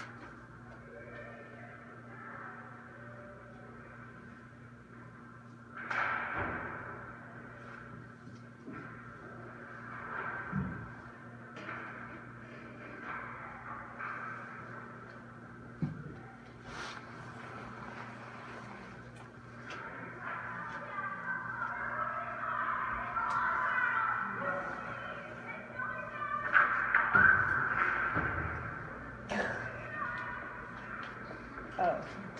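Ice hockey practice on an indoor rink: a steady low hum under occasional sharp knocks and scrapes of pucks, sticks and skates on the ice. Indistinct voices grow busier over the last third.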